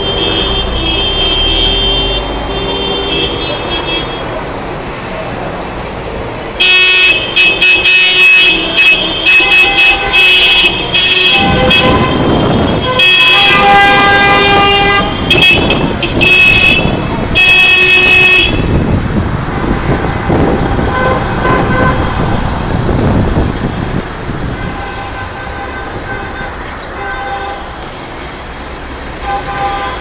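Many car horns honking over road traffic, in repeated blasts of several pitches at once. The honking is loudest for about twelve seconds in the middle, then goes on more faintly.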